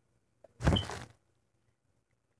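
A single short burst of rubbing and handling noise about half a second in, from fingers squeezing and working a small plastic glue tube right at the microphone.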